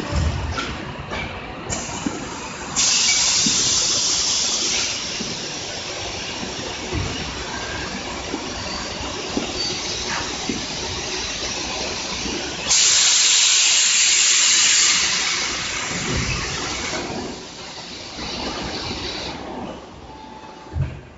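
Flaskless foundry molding line running, with scattered low knocks and clanks. Twice a loud hiss of released compressed air sounds for about two seconds, a few seconds in and again past the middle.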